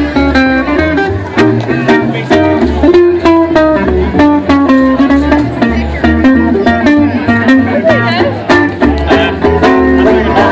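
Live traditional jazz band playing a swing tune with a steady beat and a walking bass line.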